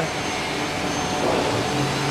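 A steady rushing noise.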